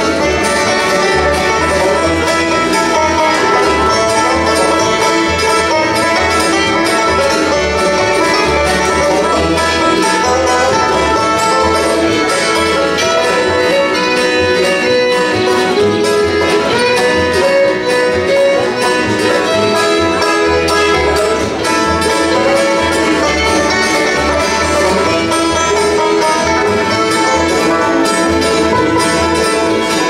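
Bluegrass band playing an instrumental tune live: banjo, fiddle, mandolin, acoustic guitar and upright bass together, steady throughout.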